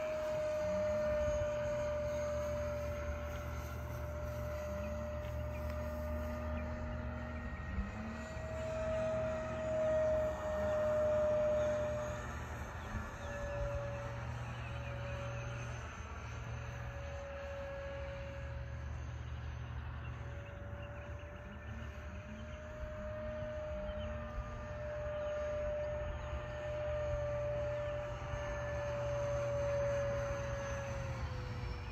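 64 mm electric ducted fan of a scratch-built RC F-117 jet flying overhead: a steady whine that drifts slightly up and down in pitch as it passes, with a low rumble underneath.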